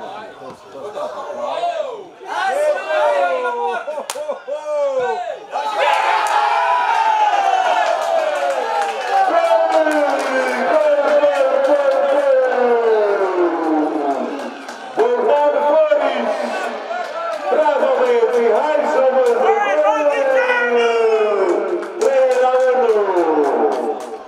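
A man's voice shouting excitedly, breaking into a long drawn-out goal call about six seconds in whose pitch slides slowly down over several seconds, then several shorter held calls.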